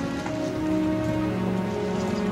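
Background music score of slowly changing held notes over a steady hiss.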